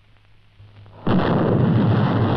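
Soundtrack explosion for a miniature pyrotechnic blast. A low steady hum builds for about a second, then a sudden loud explosion bursts in and carries on without fading.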